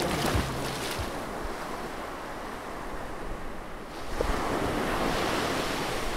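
Sea waves washing in as a steady rush, swelling louder about four seconds in. The last ring of a music hit fades out in the first second.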